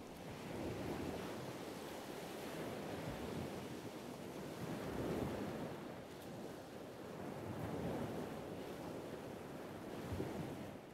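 Sea surf washing onto a rocky shore, a steady rushing noise that swells and eases in slow surges, with some wind.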